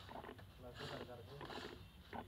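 Indistinct voices of people talking in the background, faint and not close to the microphone.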